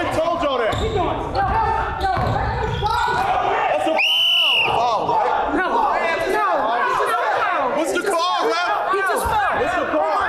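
A basketball dribbled on a hardwood gym floor while players shout and laugh, then a referee's whistle blown once in a short, steady blast about four seconds in.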